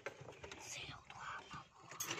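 Faint, indistinct murmured speech, with no other clear sound.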